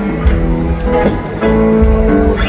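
Rock band playing live: guitar lines over bass and drums. The recording is made from within the arena audience.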